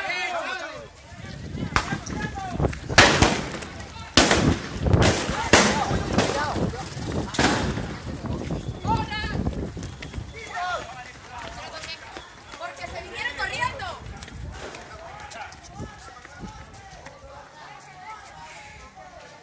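A string of sharp bangs, about half a dozen within some six seconds, with the loudest around three and four seconds in, over the voices of a crowd shouting in the street. The voices carry on after the bangs stop.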